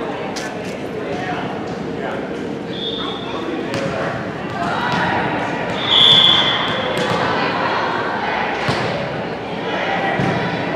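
Crowd chatter echoing in a gymnasium, with a referee's whistle blown twice: a short, faint toot about three seconds in and a louder blast about six seconds in. A few ball thuds on the hardwood floor.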